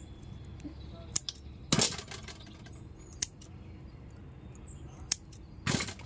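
A few scattered sharp clicks and knocks from kitchen scissors snipping the stems off small brinjals and the trimmed brinjals being set down in a steel bowl.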